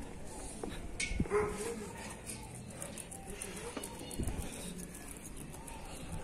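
A small dog's few faint short whines over quiet street sound, with a few soft footstep thumps on the concrete sidewalk.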